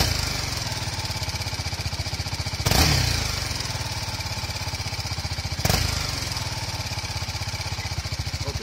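BMW G310 GS's 313 cc single-cylinder engine idling, revved twice with quick throttle blips about three seconds apart. After each blip the revs take about a second to fall back to idle, which the owner calls a strange engine behaviour that holds the revs during gear changes, and which he thinks a better flywheel might cure.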